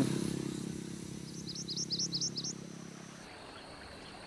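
A small bird chirping a quick run of short high notes for about a second, over a low steady hum that fades and stops near the end.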